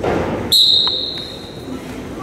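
A loud, high, steady whistle blast starts suddenly about half a second in and fades out after just over a second. It is typical of a wrestling referee's whistle, heard over crowd noise in a large gym.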